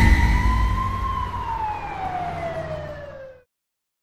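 End-card sound effect: a low rumble fading away under a single long siren-like tone that rises and then slowly falls. It cuts off abruptly about three and a half seconds in.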